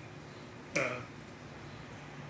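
Quiet room tone with one short hesitant "uh" from a man, about a second in, that starts with a sharp click.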